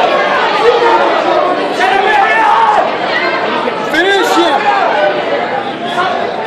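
Many voices of spectators and corner shouting and talking over one another at once, a loud steady chatter with no single clear speaker.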